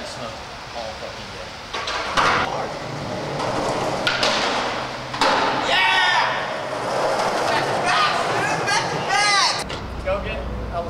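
Wordless vocal noises from people, short rising-and-falling squeals and whoops, mixed with a few sharp knocks.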